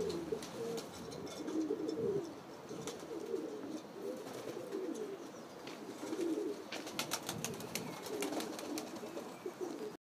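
Domestic pigeons cooing over and over in low, warbling coos, with a few sharp clicks, a cluster of them about seven to eight seconds in.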